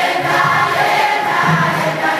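Congregation singing a praise song together, many voices sustaining the melody loudly and without a break.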